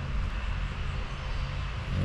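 Steady low background rumble with a faint low hum and light hiss.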